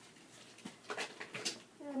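A few faint clicks and small handling noises, then a woman's voice starts just before the end.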